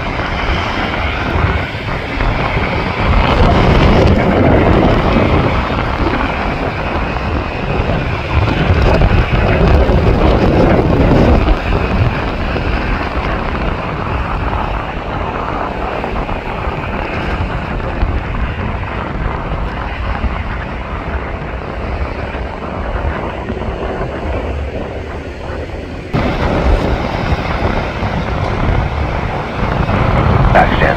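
Boeing 777-300ER's twin GE90 turbofans at takeoff thrust: a loud, steady jet-engine rumble with wind on the microphone. It is loudest for the first ten seconds or so, then drops to a lower, steady level, and the sound changes abruptly a few seconds before the end.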